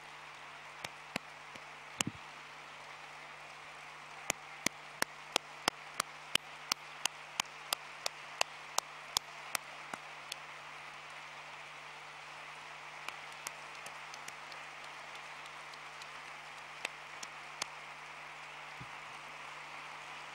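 Audience applauding steadily, with sharp single claps close to the microphone standing out, about three a second for several seconds in the first half.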